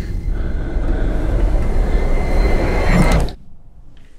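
Horror-trailer sound design: a loud low rumble with a thin rising whine over it builds and then cuts off abruptly a little after three seconds in.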